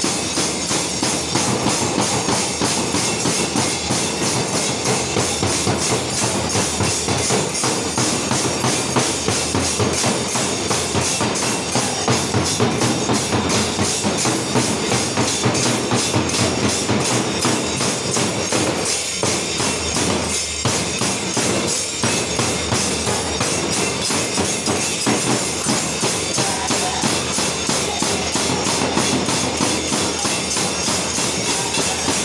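Barrel-shaped hand drum and large brass hand cymbals played together in a continuous, driving dance rhythm, with dense cymbal clashes over the drumbeats.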